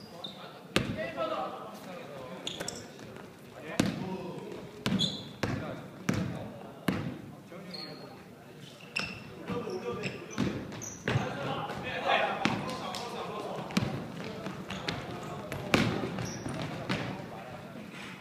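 Basketball bouncing on a hardwood gym floor during play, with irregular sharp thuds about once a second, mixed with players' voices calling out in the hall.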